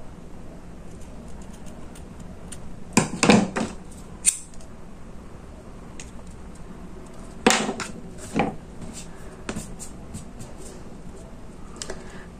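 Scissors snipping the ends of a small ribbon bow: a few separate snips spread over several seconds, with quieter clicks and handling noises in between.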